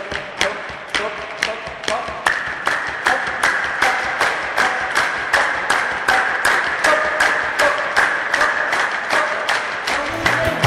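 A group clapping hands in a steady rhythm, about three claps a second, to keep time for a dance. Voices sing or chant along with the claps, louder from about two seconds in.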